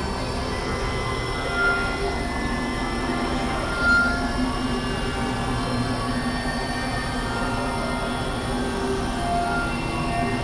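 Experimental synthesizer drone: a dense, noisy, steady texture with many held tones layered over a low rumble, with short brighter high blips about two and four seconds in.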